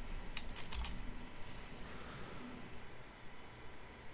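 A few faint keystrokes on a computer keyboard: a short cluster of clicks about half a second in and a couple more near two seconds, over low room hum.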